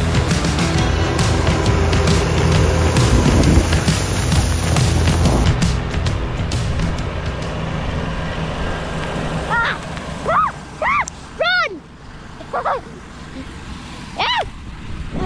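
New Holland tractor running close by with a Kverneland Exacta-CL twin-disc fertiliser spreader spinning and throwing out granules. The machine noise fades about six seconds in, and several short calls that rise and fall in pitch follow in the second half.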